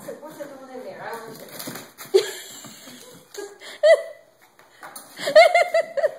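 A woman laughing in short bursts, with light taps and patter of a small dog's feet on a hardwood floor.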